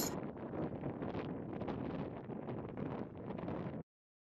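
Faint outdoor wind noise on the camera microphone, an even hiss with light rustling, cutting off abruptly to silence just before the end.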